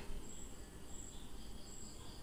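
Faint insect chirping: short, high-pitched trills repeating about every half second over low background hiss.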